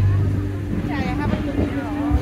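Voices of people talking nearby over a steady low hum.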